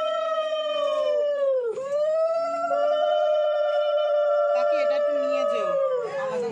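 Conch shells (shankha) blown together in long, held notes at slightly different pitches. The notes sag in pitch and break off together for a breath less than two seconds in, then start again and are held.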